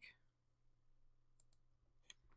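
Near silence: room tone, with two faint short clicks close together about a second and a half in.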